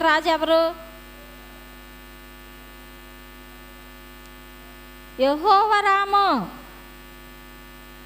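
Steady electrical mains hum from the microphone and sound system, a constant buzzy drone with many evenly spaced overtones. A woman's voice speaks a short phrase at the start and another a little past the middle, louder than the hum.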